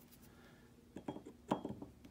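Small metallic clicks as a torque driver's Torx Plus bit is fitted onto the steel rear-sight screws of a pistol slide. A few ticks come about a second in, the sharpest about halfway through.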